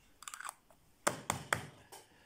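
A small metal tin being handled and set down on a stone countertop: a soft rustle, then about four sharp clicks and taps in the second half.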